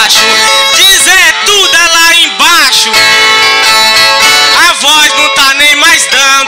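Nordestino repente music: a viola being played, with a voice singing in notes that slide up and down.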